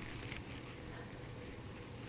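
Faint, steady room noise with a low hum, and no distinct sound event.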